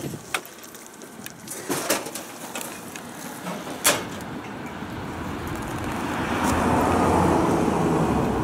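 A few light clicks and knocks from handling an open car door, the sharpest about four seconds in. Then the noise of passing traffic swells over the last few seconds.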